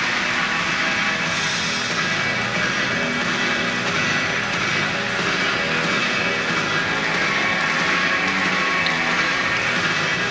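Floor exercise accompaniment music playing steadily throughout, with no commentary over it.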